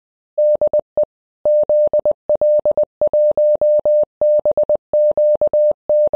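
Morse code sent as a single steady beep tone, keyed in short and long elements at a brisk pace, spelling out 'DE ZL1BQD', the amateur radio call sign sign-off.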